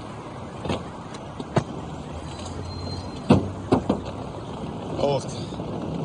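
Luggage being hauled out of a car boot, giving a handful of sharp knocks and thumps, the loudest about halfway through, over a steady hum of street traffic.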